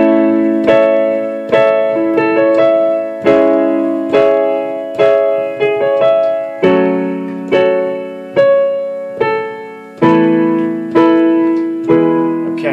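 Electronic keyboard on a piano voice playing repeated block chords, struck a little more than once a second, each ringing and fading before the next. It is the intro and verse chord progression played through, and the chords move lower about two-thirds of the way in and back up near the end.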